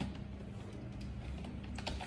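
Computer keyboard keys clicking as a word is typed, a few scattered keystrokes and then a quick cluster near the end.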